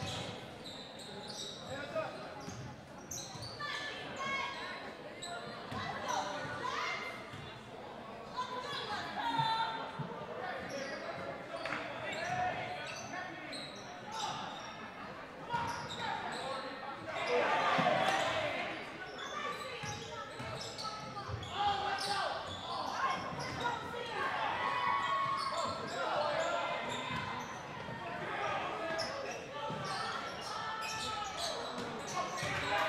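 Basketball game sound in a gymnasium: a basketball dribbling on the hardwood court amid indistinct shouts from players and spectators, echoing in the large hall.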